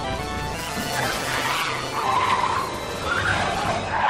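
Race car tires skidding and squealing in waves, starting about a second in, over film score music. The soundtrack has been pitch-corrected into a major key.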